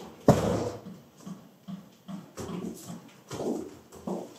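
A door shutting with a bang about a third of a second in, followed by softer knocks and shuffling.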